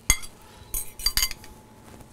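A metal fork clinking and scraping against a glass mixing bowl a few times as beaten eggs are scraped out of it into a pan.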